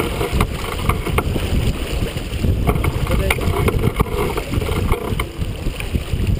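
Wind buffeting the microphone and water rushing along the hull of a sailboat under way close-hauled, a steady low rumble. A few sharp clicks and knocks from gear on deck come through it.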